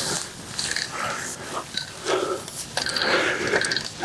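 Irregular rustling and scuffing with a few small clicks and knocks: a person moving on marsh grass while handling and positioning a tripod.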